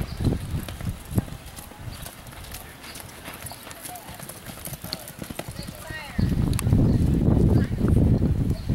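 A horse galloping on a dirt arena during a barrel racing run, its hoofbeats thudding in the first seconds. About six seconds in, a loud low rumble covers the rest.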